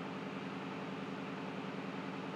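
Steady low hum with a hiss over it, even throughout with no sudden sounds: the background noise of a small room picked up by a webcam microphone.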